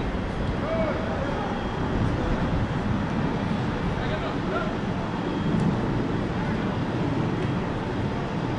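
Open-air soccer pitch ambience: a steady low rumble, with faint, distant shouts of players calling to each other now and then.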